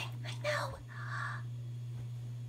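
Soft whispered voices, mostly in the first second, over a steady low electrical hum.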